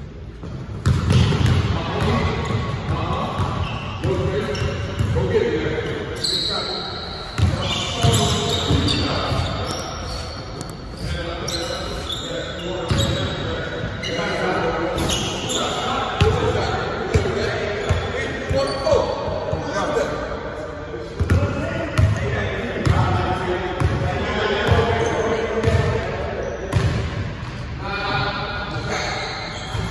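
A basketball bouncing repeatedly on a hardwood gym floor during a pickup game, with players' voices calling out over it in the large gym hall.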